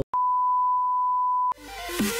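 A steady test-tone beep, the reference tone that accompanies TV colour bars, holding one pitch for about a second and a half and cutting off suddenly. An electronic music intro then swells in near the end.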